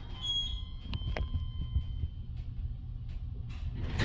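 KONE-modernized Westinghouse hydraulic passenger elevator car descending, with a steady low rumble from the ride. A single high electronic chime rings just after the start and fades out over about two seconds, with two short clicks about a second in.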